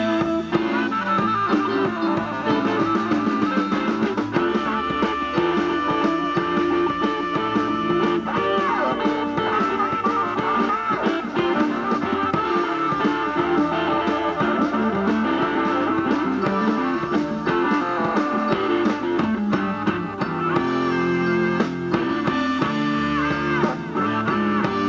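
Live rock band playing, with electric guitar to the fore over drums.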